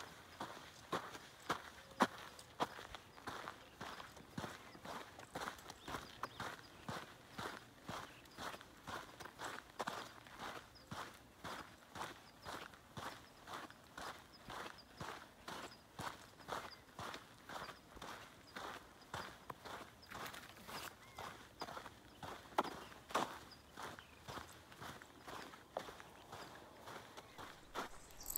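Footsteps of hikers walking steadily along a dirt trail, about two steps a second, with occasional sharper clicks among them.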